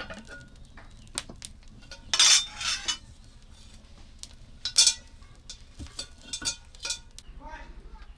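A metal cooking pot and plate clattering as the pot is set on a mud stove over a straw fire, with two loud bouts of clanking, one about two seconds in and a shorter one near the middle. Small scattered clicks of the burning straw crackling run between them.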